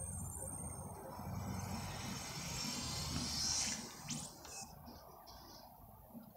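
Faint room tone with a low, steady hum, and a few soft clicks a little after four seconds in.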